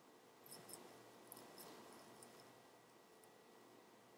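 Near silence with faint rustling and a few small ticks, clustered in the first half, as hands handle a crochet cushion and whip-stitch its edge closed with yarn.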